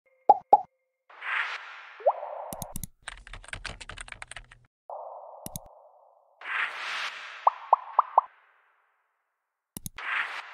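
Interface sound effects for an animated web search. Two quick pops are followed by a whoosh, then a run of rapid keyboard-typing clicks as the query is typed. A mouse click and another whoosh with four short pitched blips come next, and a last click near the end.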